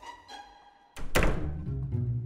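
A dramatic film-score hit about a second in: a sharp impact followed by a low, held boom that slowly fades, leading into background music.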